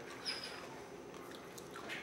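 Faint light ticks of M&M candies being twirled between the fingers and spinning on a hard countertop.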